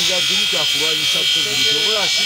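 A man talking, with a steady high-pitched buzz running underneath his voice.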